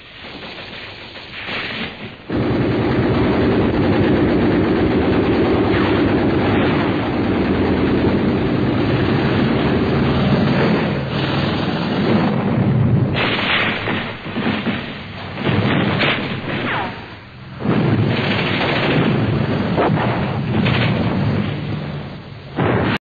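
Battle sounds on an archival war-film soundtrack: dense, rapid gunfire with explosions. It starts about two seconds in and breaks into separate bursts in the second half.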